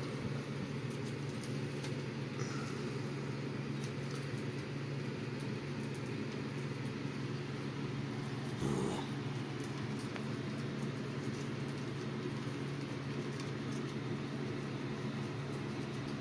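A steady low hum, with a faint knock about nine seconds in.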